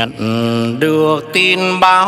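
Male singer singing a slow bolero melody into a microphone, sliding between held notes, over a live band's accompaniment.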